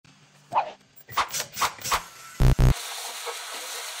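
A few short, fairly high sounds in the first two seconds, then two loud, deep thuds about two and a half seconds in. After that comes the steady hiss of a lit handheld gas torch's flame.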